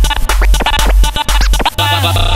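DJ scratching over music in a corridos and banda mix, quick back-and-forth sweeps. Near the end it cuts sharply into the next track, which has a heavier bass line.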